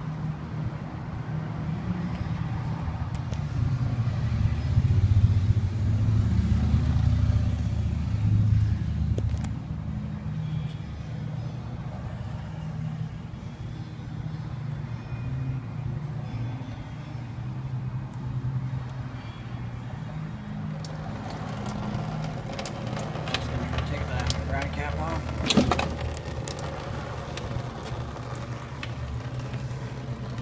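Muffled rumbling and rubbing on the microphone of a handheld camera being moved about, with low indistinct voices. About three-quarters of the way through come a run of sharp clicks and one louder knock.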